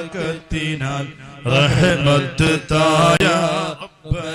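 A male voice or voices chanting Islamic devotional verses (dhikr) in a melodic, wavering line, with short breaths between phrases.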